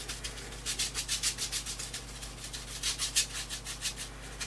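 Paintbrush bristles scrubbing glaze over collaged paper in quick back-and-forth strokes, several a second, as a dry scratchy rubbing.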